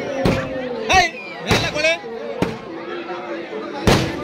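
Firecrackers going off in about five sharp bangs at irregular intervals, over a crowd talking.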